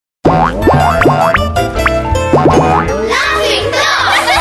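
Cartoon intro jingle: bouncy children's music over a steady bass beat, dotted with quick rising springy slide effects. From about three seconds in, high-pitched cartoon giggling chatters over the music.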